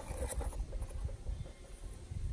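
Uneven low outdoor rumble on the microphone, with a few faint light clicks.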